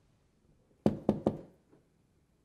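Three quick knocks on a wall, close together, about a second in.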